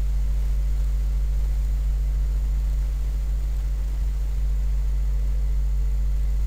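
Steady low electrical hum with an even hiss underneath: the background noise of the recording, with no clicks or other events.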